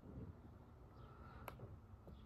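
Near silence: room tone with a faint low hum and a single faint click about one and a half seconds in.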